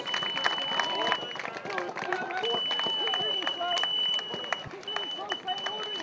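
Voices of spectators and marshals at a running-race finish line, mixed with runners' footsteps and short sharp ticks, while a high steady tone sounds on and off.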